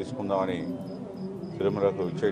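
A faint high-pitched chirp repeating about four times a second, under short phrases of a man's speech.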